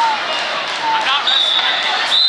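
A referee's whistle blown in one long, high, steady blast starting a little past halfway, over the chatter of spectators in a gym.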